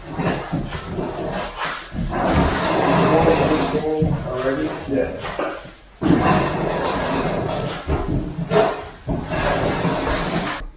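Indistinct voices of people talking in the room, not clear enough to make out words.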